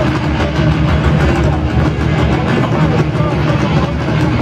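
A live metal band playing loud, with distorted electric guitars and bass over fast, dense drumming in one continuous wall of sound.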